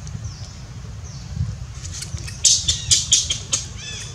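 Juvenile long-tailed macaque giving a rapid run of short, high-pitched squealing screams for about two seconds in the second half, the last call arching down in pitch: the begging screams of a young macaque demanding to nurse from its mother. A low steady rumble lies underneath.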